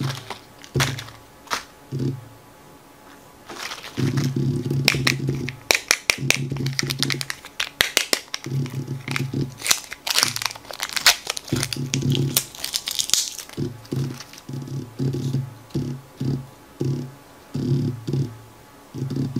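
Foil and plastic packaging of a Kinder Joy egg crinkling and tearing as it is unwrapped and its foil seal peeled off the cup, a dense run of crackles from about four seconds in to about thirteen. Background music with short repeated low notes plays throughout.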